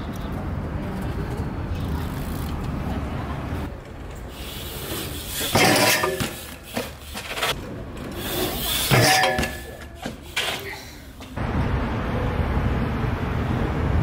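Steady low outdoor rumble, then two short, loud metal scrapes about six and nine seconds in: a BMX bike's pegs grinding down a metal stair handrail, with a little squeal in the scrape.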